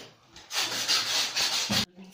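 A stick stirring white paint in a plastic bucket, scraping against the bucket: a steady rasping that starts about half a second in and stops abruptly near the end.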